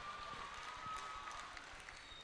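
Faint concert-hall ambience: a low, even hiss with a faint steady high tone that fades out shortly before the end.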